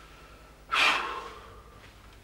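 A man's single sharp, breathy breath through the nose or mouth, about halfway through, fading away within half a second.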